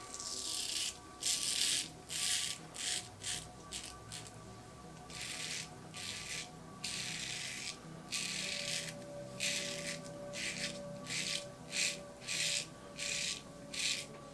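Multi-blade Leaf Shave Thorn razor with Gillette Nacet blades scraping stubble off lathered skin in short strokes across the grain. About twenty separate scratchy rasps come in quick, uneven succession, with brief pauses between runs of strokes. Faint background music runs underneath.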